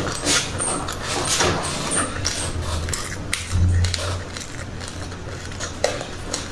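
Close-miked crunchy chewing of raw sesame and mixed seeds: a dense run of small crackles, with a metal spoon clinking and scraping in a glass cup. A brief low rumble about three and a half seconds in.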